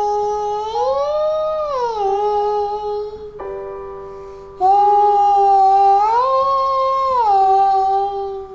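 A child singing a vocal slide exercise: a held note slides up about a fifth, holds briefly, and slides back down, done twice. Between the two slides a keyboard chord sounds and fades.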